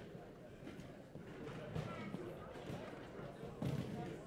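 Indistinct chatter of many voices in an auditorium, with scattered knocks and thuds from people moving about among chairs and music stands on the stage; the loudest thud comes near the end.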